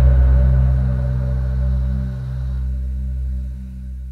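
A deep cinematic bass hit's low drone, steady in pitch and slowly fading, dying out just after the end.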